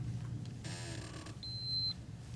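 A single short electronic beep: one steady high tone lasting about half a second, near the end, over a low steady hum, just after a brief rustle.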